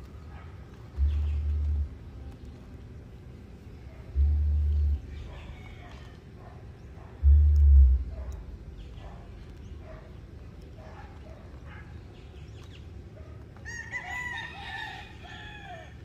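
A rooster crows once near the end, a single call of about two seconds that drops in pitch at its close. Before it come three short, low rumbles, the loudest sounds here, and faint crackling and snipping as the bougainvillea's root ball is cut with scissors.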